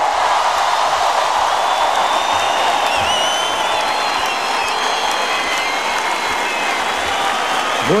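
Large concert audience applauding steadily, with a few whistles over the clapping; it eases off slightly near the end.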